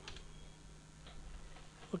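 Quiet pause: a steady low electrical hum with a few faint ticks.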